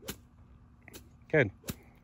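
A golf club swung one-handed and chopping through tall grass: two short, sharp hits, one at the start and one near the end.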